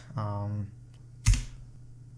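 A single sharp keypress on a computer keyboard, about a second and a quarter in: the Enter key launching a terminal command.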